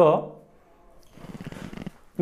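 A man's voice trailing off at a sentence end, then a short, raspy in-breath lasting just under a second before he speaks again.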